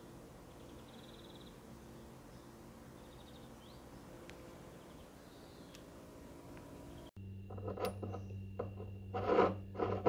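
Faint open-air background with a few faint, quick high chirps. After a sudden cut, a steady hum and a run of knocks and clinks as a small amber glass dropper bottle is handled over a wooden table.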